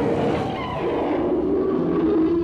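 Film sound effect of the giant pterosaur monster Rodan's cry: one long, loud, pitched call that drops lower about two-thirds of a second in and holds there.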